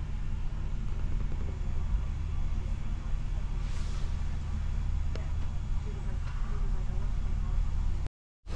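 Steady low rumble of a passenger train carriage interior, heard from inside the cabin.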